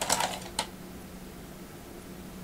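A few light clicks and rattles of small objects being handled in about the first half-second, then only a faint steady hum.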